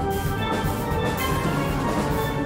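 Steel band playing a calypso arrangement: tenor, mid-range and bass steelpans together with a drum kit, many pan notes sounding at once over a steady beat.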